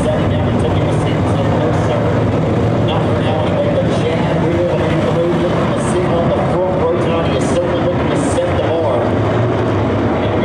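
A pack of USRA Modified dirt-track race cars with V8 engines running at racing speed, their pitch rising and falling as they go through the turns and down the straight. Voices talk over the engine noise.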